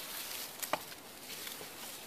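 Faint rustling as hands grip the plastic-wrapped sphagnum moss ball of a lychee air layer, with one sharp click about two-thirds of a second in.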